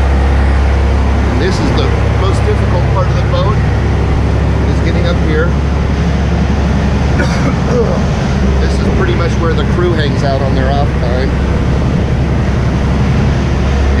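Steady low drone of a sportfishing boat's diesel machinery running, heard on deck, with indistinct voices over it.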